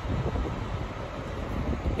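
Wind buffeting the microphone: a steady, gusty low rumble with no distinct events.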